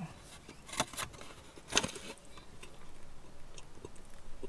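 Quiet mouth and handling noises while a bite of burger is chewed: a few short clicks, the sharpest about two seconds in.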